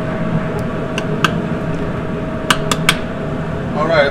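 A metal utensil clinking against a cooking pot: one clink about a second in, then three quick clinks past halfway. A steady kitchen background hum runs underneath.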